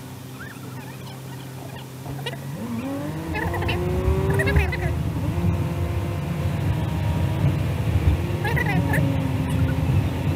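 Car engine idling, heard from inside the cabin. About two and a half seconds in, its note climbs as the car pulls away and accelerates, with road noise building. The pitch then drops back twice as the automatic gearbox shifts up.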